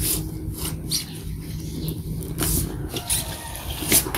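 Paper record sleeves and a vinyl LP being handled: several short rustles and scrapes, with a steady low hum underneath.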